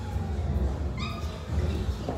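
Low rumbling from a phone being handled and carried, with one short high-pitched call about a second in.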